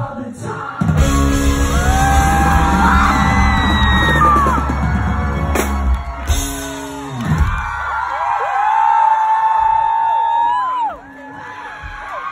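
Live rock band with bass guitar and drums playing loud in a hall, with high screams from the crowd over it. The band stops about seven seconds in, leaving the crowd cheering and screaming.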